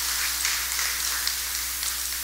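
Steady hiss with a low electrical hum from the microphone and sound-system feed.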